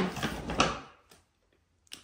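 A cardboard toy box being handled: a short rustle with a light knock or two in the first second, then quiet.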